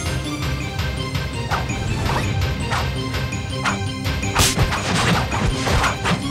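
Fight-scene sound effects: a string of hits, swishes and crashes, about six in all, the loudest about four and a half seconds in, over steady background music.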